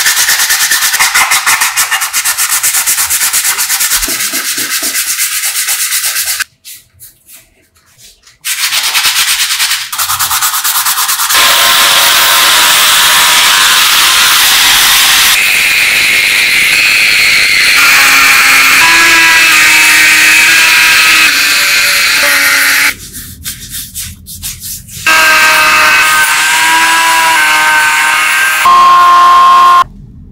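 Sandpaper rubbed by hand over a small wooden block in quick scraping strokes. From about eleven seconds in, a rotary tool with a sanding drum grinds the wood, its motor whining steadily and shifting in pitch a few times, with short breaks between passes.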